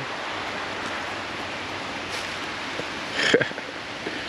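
Steady rushing hiss of river water flowing over a shallow rocky riffle, with one short sharp sound a little past three seconds in.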